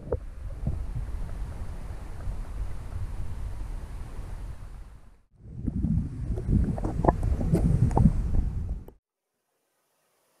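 Muffled, rumbling water sloshing and rushing around a camera held under the surface beside a moving kayak, with scattered knocks and clicks. It drops out briefly about five seconds in, comes back louder, and cuts off about a second before the end.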